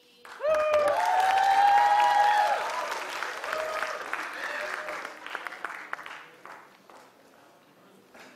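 Audience applause starting suddenly, with shouted cheers and whoops over the clapping in the first two to three seconds; the clapping then thins out and fades away by about seven seconds in.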